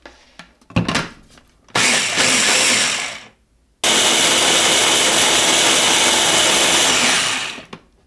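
Ninja blender with a press-down motor head blending a thin coconut milk mix in two runs: a short burst about two seconds in, then, after a brief pause, a longer run of about four seconds that winds down near the end. A couple of knocks come before it starts.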